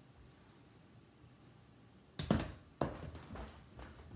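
Feet landing on the floor during jumping jacks: a run of thuds starting about halfway through. The first two are the loudest, and softer ones follow about twice a second.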